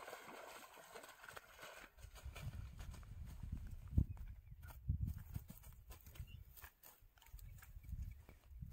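A hooked rohu splashing at the surface of a weed-choked channel. From about two seconds in come scattered knocks, low thumps and rustling in the grass as the fish is hauled out onto the bank.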